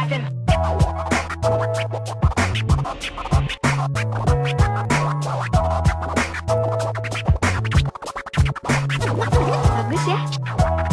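Hip hop music with a steady bass line and drum beat, cut with turntable scratches.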